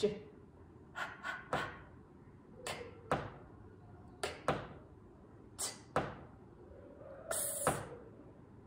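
A woman saying single phonics letter sounds, one per card (a buzzing 'zz' near the end), each followed by a sharp tap of a pen on the interactive whiteboard's 'Correct' button. A new card comes about every second and a half.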